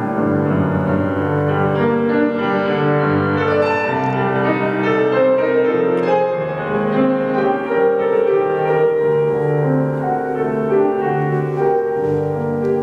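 Grand piano played solo in a classical piece, with held chords and a moving line sounding without a break.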